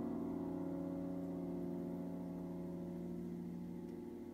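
Prepared grand piano, a low chord struck just before, left ringing and fading slowly, its tones wavering with a gentle beat and taking on a gong-like shimmer.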